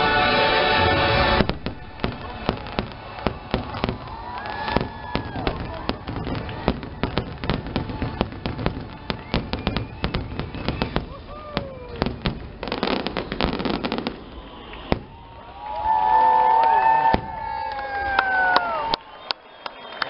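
Show music with a choir cuts off about a second and a half in, then a fireworks display goes off: rapid, irregular bangs and crackles of shells bursting, with a few sliding whistle-like tones among them, loudest near the end.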